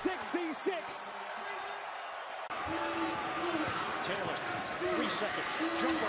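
Television broadcast sound of a college basketball game: arena crowd noise with a basketball bouncing on the court. The sound changes abruptly about two and a half seconds in, at a cut from one game clip to another.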